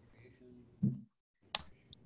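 Faint, low voices over a video-call line that cut out to dead silence for a moment, followed by a single sharp click.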